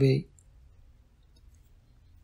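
A reading voice finishes a phrase in the first moment, then a pause of near silence, only faint room tone, until the next phrase.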